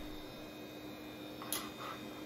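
Low steady hum with faint background noise, and one brief faint click about one and a half seconds in.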